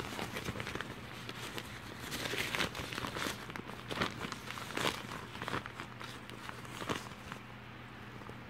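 Thin nylon packing cube being handled: fabric rustling and crinkling, with scattered small clicks and ticks.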